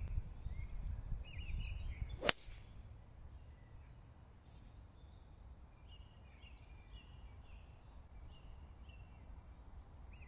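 A single sharp click of a golf club striking the ball off the tee, about two seconds in, over low wind rumble on the microphone. Faint bird chirps run on after the strike.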